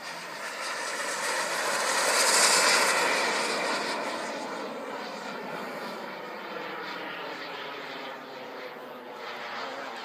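Radio-controlled model jet flying past overhead: its engine sound grows to a loud peak about two and a half seconds in, then fades to a steadier, quieter sound as it moves away.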